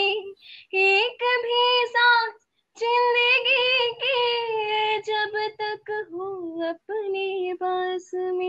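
A young woman singing a Hindi song unaccompanied, holding long notes with vibrato in several phrases broken by short breaths.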